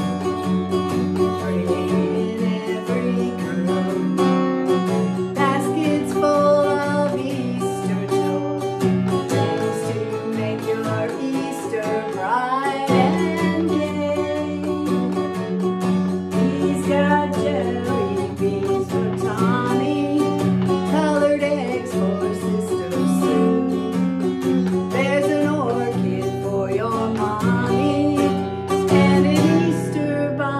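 A woman singing along to a strummed Taylor acoustic guitar, with steady chords under the vocal melody.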